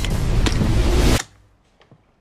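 Trailer score swell: a loud, dense rush of sound that cuts off suddenly a little over a second in, dropping to near quiet with a faint tick near the end.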